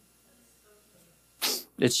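A man's sharp, audible breath in, coming after a quiet pause and just before he starts speaking again near the end.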